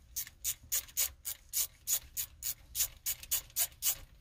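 Hand ratchet wrench clicking in a steady run of about five clicks a second, working a bolt loose.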